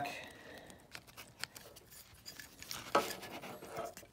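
Faint plastic clicks and scraping as the gray plastic locking piece of a Ford C405 tailgate wiring connector is slid back by hand, with one sharper tick about a second and a half in.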